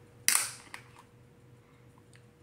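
Plastic screw cap of a Prime drink bottle twisted open: one sharp crack about a quarter second in as the seal breaks, fading quickly, then a couple of faint clicks.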